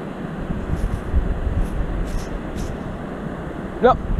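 Wind buffeting the microphone as a gusting low rumble, with a few faint scratches.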